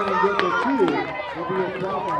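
Indistinct chatter of several children's and adults' voices overlapping, with one long held call fading out about half a second in and a few scattered clicks.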